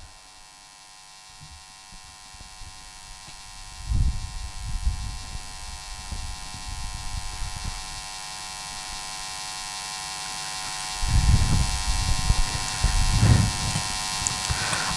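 Steady electrical mains hum and hiss from an open sound system while no one is talking, with the hiss growing louder. Low rumbling comes in about four seconds in and again near the end.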